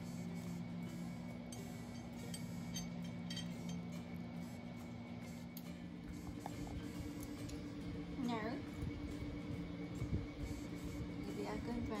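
Soft background music with steady held notes that change pitch about halfway. Near the end there are two brief dipping-and-rising vocal sounds.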